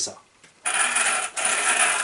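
Drivetrain of an Arrma Mojave 1/7 RC truck turning, its gears giving a dense, noisy rattle that starts a little over half a second in. It is the noisy mechanical transmission that the owner calls the most unpleasant thing about Arrma.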